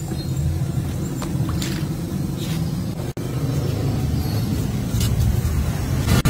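Steady low rumble of street background noise, with a sudden brief cut-out about three seconds in.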